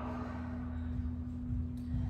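Steady low background hum with one faint constant tone underneath, room noise with no voice.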